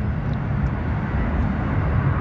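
Wind on the microphone: a loud, uneven low rumble, with a few faint ticks.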